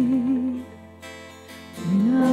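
Live worship band music with acoustic guitar: a held sung note with vibrato fades out about half a second in, the band goes on softly, and singing comes back in near the end on a rising note.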